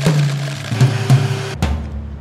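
Background music with drums and a bass line over a high-speed blender grinding corn nuts, a loud rushing noise that cuts off about a second and a half in.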